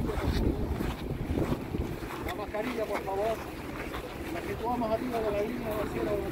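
Wind buffeting the microphone, with a crowd of people chattering in the background from about two seconds in.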